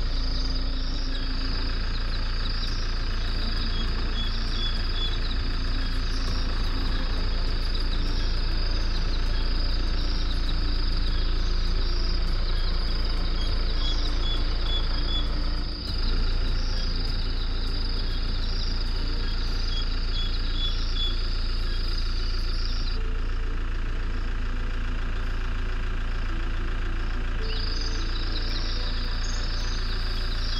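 A vehicle's engine idling with a low, steady hum, under a continuous high insect chorus. The insect shrilling stops for about four seconds near the end, then starts again.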